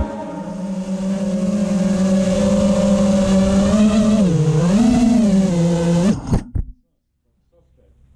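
FPV quadcopter's electric motors and propellers humming steadily as it flies low over grass. The pitch dips and rises once about four to five seconds in, then cuts off sharply about six seconds in as the quad comes down in the grass.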